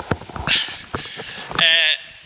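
A man talking outdoors, broken up: a few knocks and a short rush of rustling noise come first, then a spoken word near the end.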